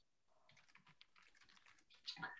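Near silence, with a run of faint clicks from about half a second in until near the end.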